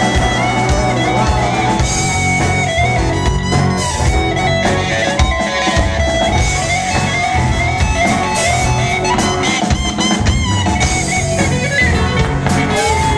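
Live rock band playing an instrumental stretch: electric guitars over a drum kit, loud and steady, with no singing.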